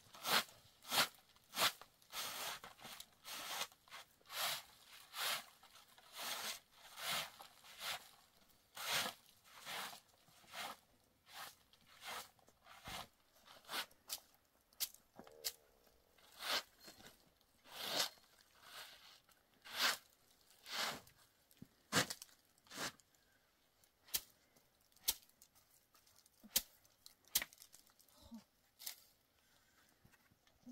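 Bundled straw broom sweeping a plastic ground sheet: a run of short, scratchy brushing strokes, about two a second at first, thinning out to occasional sharper swipes in the second half.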